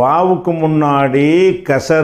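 A man's voice reciting Arabic word forms in a drawn-out, chant-like way, with vowels held on a steady pitch for about a second before a short break.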